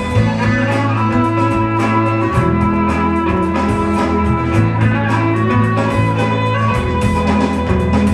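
A live band playing an instrumental passage: electric and acoustic guitars, fiddle, bass guitar and drum kit, with a steady beat and sustained bass notes.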